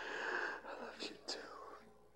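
A man's breathy, strained voice making a wordless whispered sound, squeezed out while being hugged tightly. It is loudest in the first half second and ends with a falling tone.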